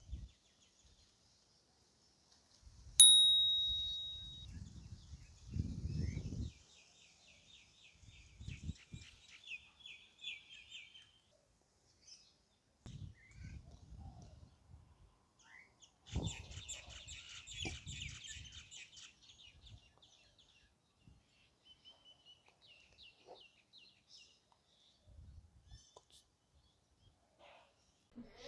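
Birds chirping and trilling in bursts, with a single bright ding about three seconds in that rings and fades over a second or so. Occasional low rumbles come and go underneath.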